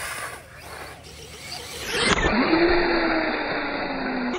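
Radio-controlled toy dirt bike's motor whining as it drives on wet asphalt. About two seconds in, the whine climbs quickly, then slides slowly down in pitch over tyre noise as the bike comes up onto its back wheel.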